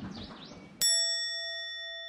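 A single bright bell-like chime sound effect hits about a second in and rings on with a clear tone that slowly fades. Before it, faint outdoor background noise.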